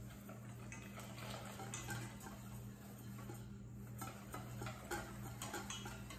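Wire whisk ticking lightly and irregularly against a metal mixing bowl as egg yolks are whisked and tempered with warm milk, over a steady low hum.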